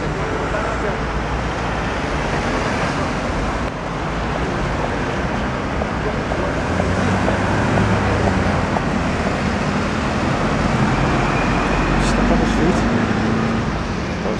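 Busy road traffic passing on a wet street: a steady wash of tyre hiss and engine noise from cars and vans. A heavier vehicle's low rumble swells in the second half.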